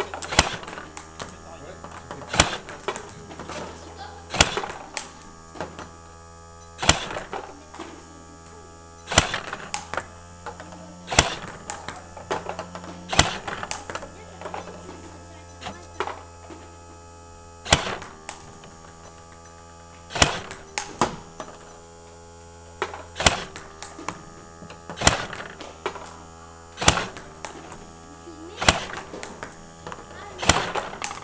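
Table-tennis practice against a ball robot: sharp clicks of plastic table-tennis balls off the bat and bouncing on the table, the loudest hit about every two seconds with lighter bounces between. A steady low hum runs underneath.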